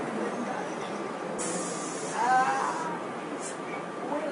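Steady rumble and hiss of a city bus interior, with a short burst of hiss about a second and a half in and a brief high-pitched vocal cry about two seconds in.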